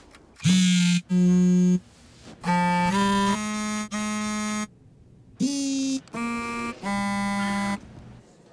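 A run of short electronic phone alert tones, about seven in a row. Each has a different pitch and timbre, and they are separated by short gaps; a couple of them slide upward as they begin.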